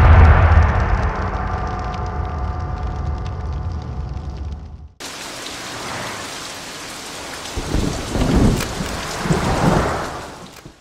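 The tail of a musical sting with a deep boom dies away over the first five seconds and cuts off abruptly. A rain-and-thunder sound effect follows: steady rain with low rumbles of thunder in the last couple of seconds.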